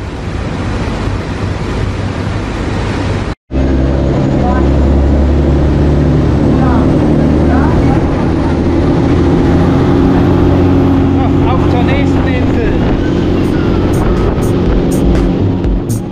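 Water taxi's engine running steadily under way: a loud, even low drone over the rush of its wake. The sound cuts out for a moment about three seconds in, then the drone holds steady.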